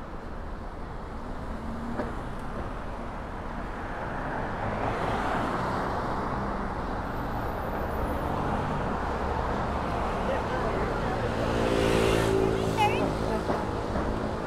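City street traffic: road noise from passing cars swells and is loudest near the end, where a low engine hum from a vehicle comes in.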